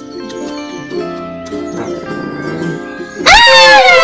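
Soft background music, then about three seconds in a sudden, loud, high-pitched scream of fright whose pitch falls away.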